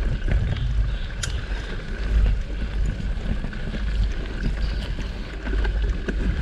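Wind noise on the microphone of a camera riding along on a mountain bike moving down a dirt singletrack, with scattered small clicks and rattles from the bike and its tyres on the trail.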